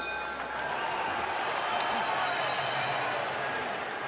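Large arena crowd chattering and cheering. A ringing bell tone, typical of the boxing ring's end-of-round bell, dies away in the first moment.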